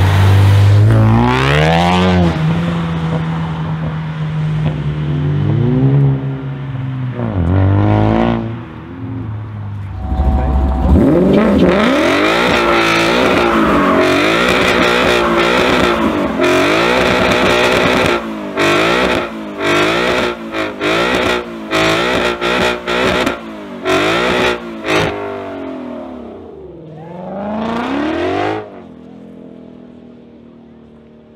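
Ford Mustang engines revving hard: first one accelerating away with the pitch sweeping up and down, then another held at high revs during a burnout with its wheels spinning. Its note chops on and off many times in quick succession, then ends with one last rev near the end.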